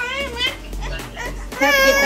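A toddler's high-pitched voice: a short sing-song sound at the start and a louder, longer one near the end.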